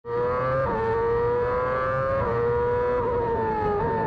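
Formula 1 car's engine at high revs, heard onboard. Its pitch holds high and drifts slowly, with a sharp little drop at each of about four gear changes.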